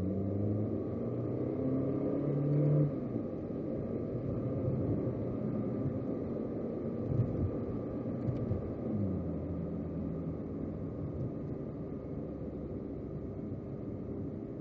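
Ferrari 458 Italia's V8 engine accelerating, its note rising steadily, then cutting off sharply about three seconds in. It runs on more evenly after that, picking up again with another rise near the nine-second mark.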